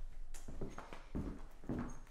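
Footsteps walking across a hardwood floor, several steps in a row.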